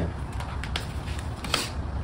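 A few light clicks and handling knocks as a cordless drill is picked up and its bit set onto a screw in a golf-cart motor's end cap, over a low steady hum.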